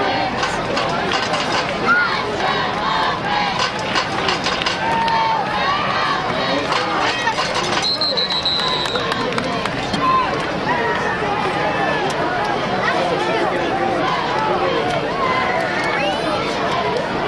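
Football crowd in the stands, many voices talking and shouting over each other, with a short high referee's whistle blast about halfway through as the play ends.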